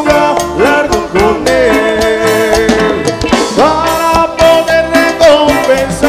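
Live Christian cumbia band music: steady percussion under a melodic lead line that glides up and down in pitch.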